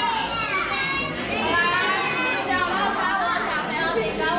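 Many children chattering and talking over one another at once in a large hall, with no single voice standing out.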